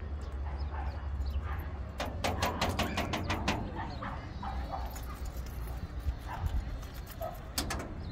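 Dogs yipping, whimpering and barking in short bursts over a steady low rumble. A quick run of sharp knocks or clatters comes about two seconds in and lasts over a second, with two more near the end.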